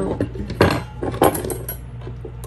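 Metal forks clinking and knocking as they are handled on a work surface: a run of small clicks with two louder knocks about two-thirds of a second apart.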